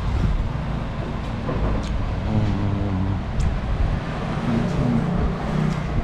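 Low, steady rumble of road traffic going by, with faint pitched engine-like tones coming and going.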